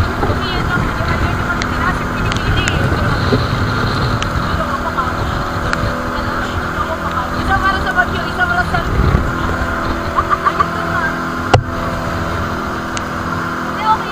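Outrigger boat's engine running steadily under heavy wind and water noise on rough sea, with voices calling out now and then. A single sharp knock comes late on.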